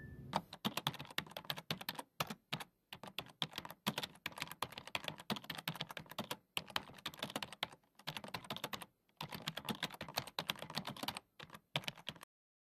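Computer-keyboard typing sound effect: rapid, uneven key clicks with a few short pauses, keeping time with on-screen text being typed out.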